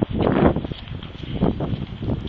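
Wind buffeting the microphone in gusts, strongest twice, with no voices.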